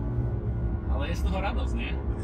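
BMW M2's turbocharged straight-six engine running under load, a steady low drone heard inside the cabin. A voice sounds briefly about a second in.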